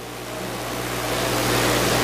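A steady rushing noise that swells gradually louder over two seconds, over a low steady hum.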